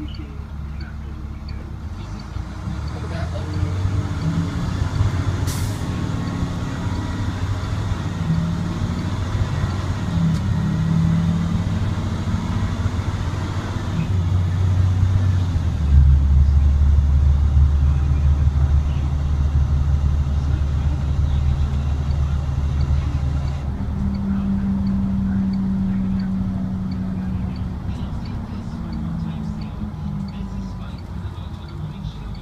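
Navistar International DT466E inline-six turbo diesel of an IC CE300 school bus, heard from inside the cab as the bus pulls away and gains speed. The engine note changes pitch in steps as it works through the gears, and a low drone is loudest from about halfway through. There is one sharp click a few seconds in.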